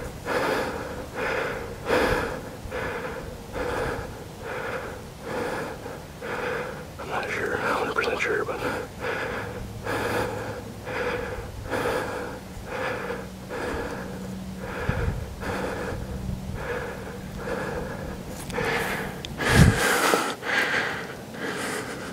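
A person breathing hard and fast close to the microphone, about two short breaths a second, with a low steady hum in the middle and a thump near the end.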